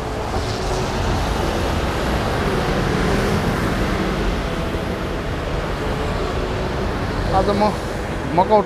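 Busy city street traffic: a city bus, cars and motorbikes running past close by, a steady rumble and hiss of engines and tyres that swells a little a few seconds in.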